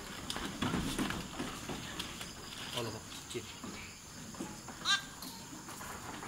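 A goat giving one short, high-pitched bleat about five seconds in, over faint rustling and shuffling noises.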